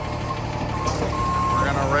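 Bucket truck's warning alarm beeping over its Cummins diesel engine running steadily: short evenly pitched beeps, then one longer beep about halfway through, while the outrigger is set down. A man's voice starts near the end.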